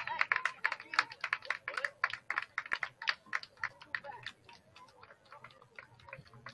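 Rapid, irregular clicking, several clicks a second, thinning out after about four seconds.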